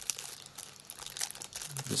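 Clear plastic parts bag crinkling faintly as a new part is handled and taken out of it.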